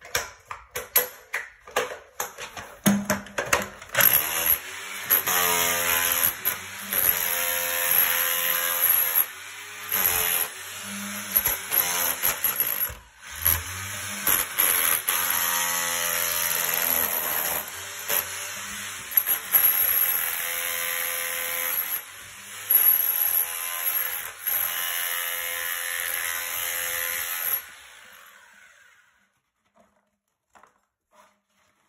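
Power chisel (rotary hammer) breaking out concrete around a toilet drain pipe: sharp knocks in the first few seconds, then a loud, steady buzzing run with short pauses. It winds down and stops near the end.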